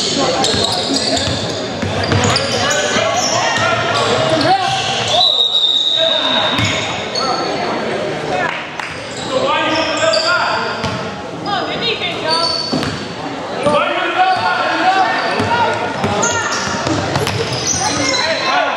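Basketball game in an echoing gym: a ball bouncing on the hardwood court and indistinct shouting from players, coaches and spectators. A referee's whistle sounds once as a long steady blast about five seconds in.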